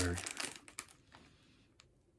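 Packaging crinkling as it is handled, a run of light crackles that dies away after about a second, with one faint click near the end.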